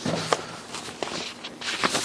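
Footsteps and the shuffle and rustle of paper handout sheets being passed around a room, with a couple of soft knocks.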